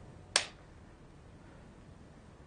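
A single short, sharp click, like a snap, about a third of a second in, followed by quiet room tone.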